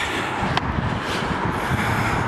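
Steady road traffic noise from a busy street, a low rumble, with a couple of faint footsteps.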